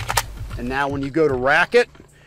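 A man speaking, with a brief sharp click just after the start.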